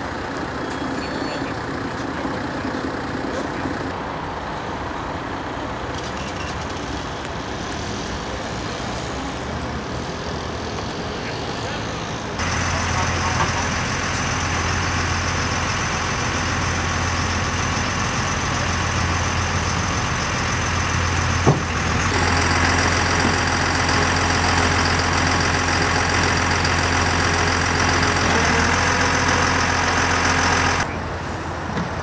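Steady engine running, stepping up about twelve seconds in to a louder, deeper hum with steady high tones from a flatbed tow truck working to load a car, and a further step up a little past two-thirds of the way through.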